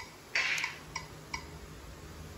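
Short electronic ticks from a slot machine game setup as its touch-screen button deck is pressed: one at the start, a brief hissy burst about a third of a second in, then two more ticks close together about a second in.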